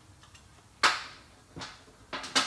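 Metal hand tools clanking as they are picked up: one sharp, loud clank just under a second in that rings briefly, then a fainter one a moment later.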